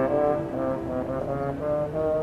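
Euphonium solo: a melody of held brass notes over a concert band accompaniment.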